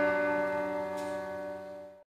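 Closing sitar strokes ringing out with their sympathetic strings over a held harmonium chord, the last sounds of the piece fading steadily away, then cut off suddenly at the end.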